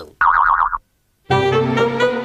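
Cartoon boing sound effect: a warbling tone that wavers quickly up and down for about half a second, then a brief silence. Brassy, jazzy cartoon theme music comes back in about a second and a half in.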